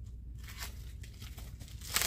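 Faint rustling as fabric bolts in plastic wrapping are handled, over a steady low hum. Near the end there is one brief, loud crinkle of the plastic.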